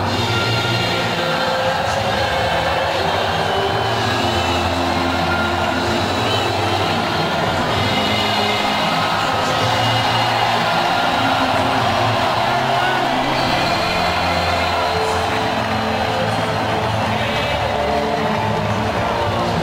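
Music with long held bass notes over continuous crowd cheering from a packed arena.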